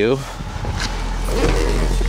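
The 5.7 Hemi V8 of a 2007 Dodge Charger R/T, fitted with a Magnaflow cat-back exhaust, idling steadily as a low, even hum, with a brief hiss of noise in the middle.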